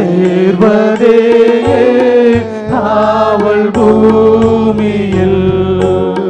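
A worship team singing a Tamil Christian song in unison through handheld microphones and a PA system, with long held notes.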